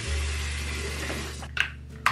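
Water running from a bathroom tap into the sink, a steady hiss, followed by two short swishes near the end.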